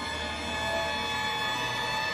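A sustained musical chord: many steady tones held unchanged over a low rumble, starting and cutting off abruptly.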